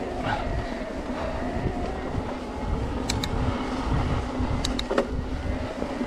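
Specialized Turbo Levo e-mountain bike riding on a rough gravel trail: the mid-drive motor whines at a steady pitch under pedal assist over a low rumble from the trail, with a few sharp clicks from the bike around three seconds and again near five seconds.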